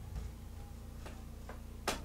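Quiet room tone: a steady low hum with a few faint, irregularly spaced clicks, the sharpest one near the end.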